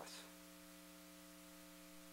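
Near silence with a faint, steady electrical mains hum made of several constant tones.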